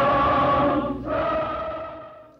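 A large group of voices singing together in long held notes, shifting to a new note about a second in and fading out near the end.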